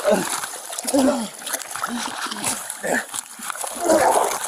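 River water splashing and sloshing around people in the water, with short, strained human vocal sounds (gasps and grunts of effort) breaking in every half second or so.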